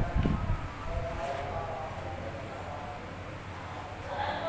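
Whiteboard marker squeaking faintly as it writes on the board, a thin wavering tone over low room noise.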